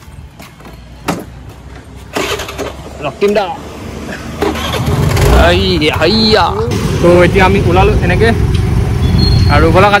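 A Honda motorcycle's engine starting and the bike moving off, with a low engine and road rumble that grows louder from about halfway in.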